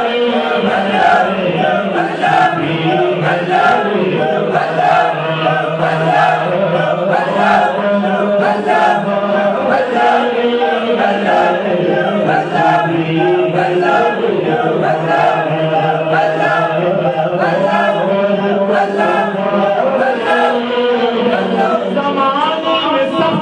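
Voices chanting a devotional refrain together, a repeating sung line over a held low note, with a steady beat throughout.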